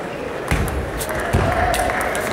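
Table tennis rally: the celluloid ball clicking sharply off bats and table about every half second, starting about half a second in, over crowd murmur in a large hall.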